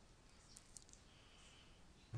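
Near silence in a screen recording, with a few faint clicks a little under a second in.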